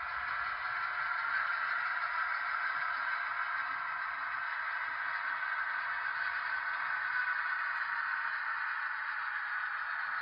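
HO-scale EMD SW1500 model switcher locomotive running slowly with two boxcars in tow: a steady midrange drone with no bass, from the model's motor and running gear on the track and its onboard sound.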